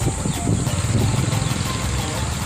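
Motorcycle engine running steadily.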